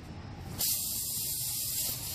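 Air hissing out of a punctured semi-trailer tire as a tire repair tool is worked into the hole in the tread; the hiss is weaker at first, then comes back strongly about half a second in and holds steady.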